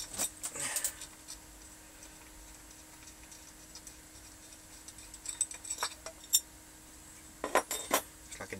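Small metal parts of an X-ray head transformer clicking and clinking as they are handled by hand, in short clusters about a second in, again around five to six seconds, and near the end. A faint steady hum runs underneath.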